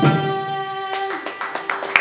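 The final note of a Carnatic mangalam, with the female voice and violin held over a steady drone and the mrudangam's last strokes, ending about a second in. Scattered audience clapping begins near the end.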